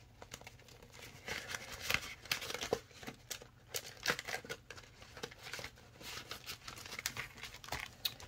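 Paper cash and plastic budget envelopes and binder pages being handled: irregular crinkling and rustling with scattered light clicks.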